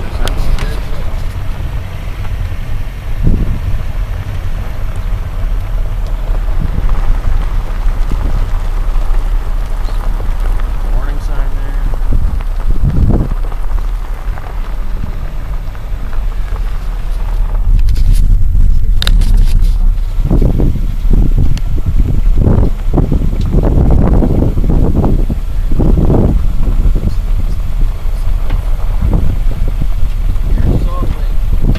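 Heavy wind buffeting on the microphone with car road noise, a loud, low rumble that gets louder and more gusty about two-thirds of the way in.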